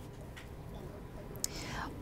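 Low steady background hum of a live broadcast feed. Near the end come a short mouth click and an intake of breath as the reporter gets ready to speak.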